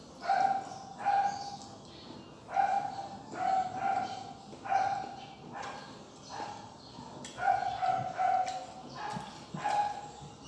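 A dog yelping and whining in short high-pitched calls, about one a second.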